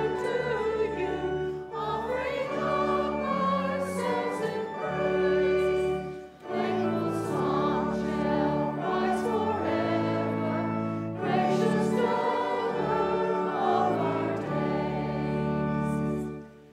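A church congregation singing a hymn with instrumental accompaniment, the chords held steadily, with short breaks between lines about six and eleven seconds in.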